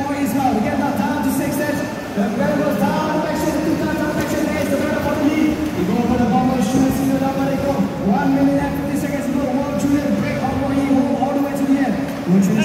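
Electric 2WD RC buggies racing, their motors whining in repeated rising glides as they accelerate out of corners and down straights, several cars overlapping, over a crowd and commentary in the background.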